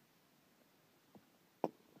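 Handling of a phone being fitted onto a tripod mount: quiet background, a faint tick a little after a second in, then one sharp click near the end as the phone seats in the mount.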